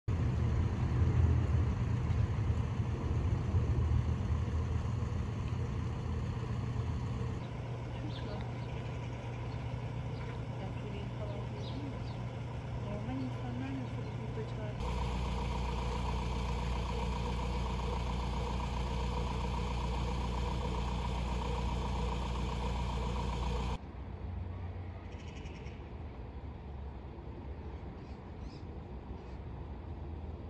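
Steady low hum of a vehicle engine idling, heard amid street background noise. The background changes abruptly three times, about a quarter, half and five-sixths of the way through.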